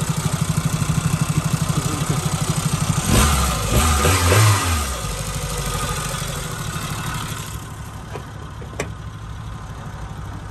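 A 1995 Suzuki Jimny Sierra's 1.3-litre eight-valve four-cylinder engine idling with an even pulse, its valves freshly adjusted. About three seconds in, the revs rise and fall two or three times in quick blips, then settle back to idle, which sounds duller and quieter near the end, with a couple of faint clicks.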